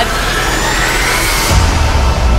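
Dramatic TV sound-design riser: a rising whoosh that climbs in pitch for about a second and a half, then breaks into a deep bass hit that carries on as a low rumble.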